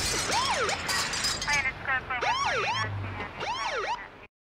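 Police-style sirens wailing: several overlapping tones rising and falling in quick arcs, about twice a second. At the start, the tail of a shattering-glass effect dies away.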